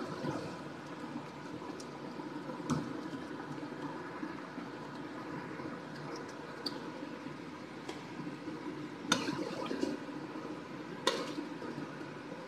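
Chicken curry simmering in a wok, with a steady bubbling hiss and a few sharp clicks of a metal ladle against the wok as it is stirred.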